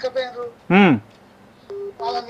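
A caller's voice over a phone line trails off, then one loud short vocal sound rises and falls in pitch. Near the end a short steady telephone tone sounds, like a line tone when a call drops.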